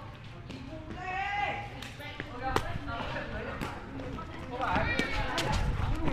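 A shuttlecock is kicked back and forth in a đá cầu rally: a string of short, sharp, irregularly spaced foot strikes on the shuttlecock, with players' voices calling around them. The sound grows louder toward the end.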